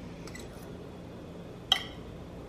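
Fork or knife clinking once, sharply, against a ceramic plate about three-quarters of the way through, with a faint tap earlier, over a low steady hum.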